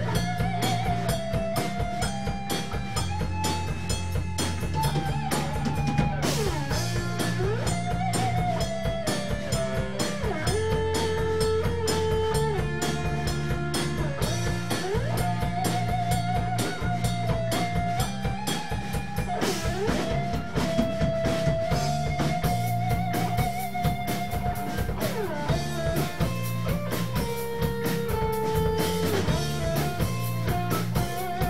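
Live rock band playing: electric guitars and drum kit, with a held melody line that wavers in pitch over steady chords.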